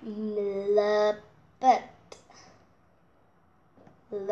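A girl's voice holding one long, steady sung note for about a second, then a short syllable; the rest is quiet room.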